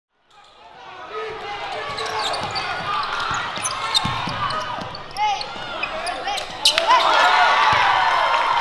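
Live gym sound of a basketball game: a ball being dribbled on a hardwood court, short sneaker squeaks, and spectators talking and calling out. It fades in over the first second. Near the end a sharp bang is followed by louder crowd voices.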